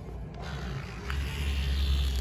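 Pull-string vibrating mouse cat toy buzzing: a steady low hum that starts about half a second in and grows stronger from about a second in, with a single click near the start of the stronger part.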